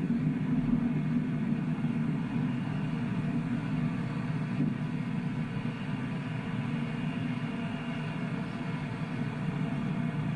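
Steady low rumble of Space Shuttle Discovery's rocket engines during ascent, with the solid rocket boosters still burning, played from launch footage over loudspeakers in a room.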